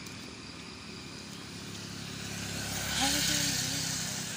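A road vehicle passing on a wet road, its engine rumble and tyre hiss building to loudest about three seconds in, then easing off.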